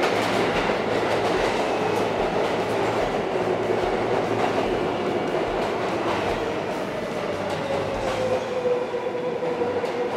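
Subway train running alongside the platform, its wheels clattering on the rails. A whine falls slowly in pitch over the last few seconds as the train slows.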